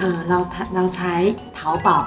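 A woman speaking, with background music under her voice.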